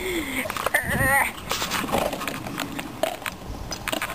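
Short knocks and rustling from a romping puppy and a moving hand-held camera, with a loud, quivering cry lasting about half a second around a second in.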